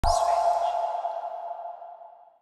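Electronic TV channel logo sting: a sudden hit with a brief swoosh at the start, leaving one held tone that fades away over about two seconds.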